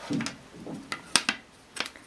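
A few sharp taps and clicks of a plastic ruler and pen being handled and set down on a sheet of paper on a desk, the loudest a little past a second in.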